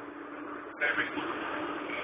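Steady hum and road noise of a moving vehicle, heard from inside, with a constant low tone. It turns suddenly louder and rougher about a second in.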